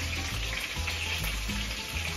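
Tacos frying in hot oil in a skillet, a steady sizzle.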